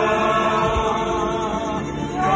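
Live violin and accordion playing a song together, with a group of voices singing along.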